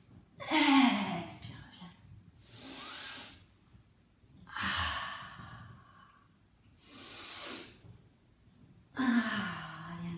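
A woman breathing hard through repeated pikes on a stability ball: five audible breaths about two seconds apart, the first and last voiced like sighs.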